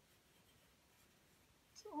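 Near silence with faint scratching of a graphite pencil on paper.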